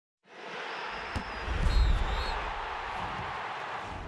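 Produced intro sound effect for a highlights title card: a rushing noise with a sharp hit about a second in and a deep boom that swells and fades soon after.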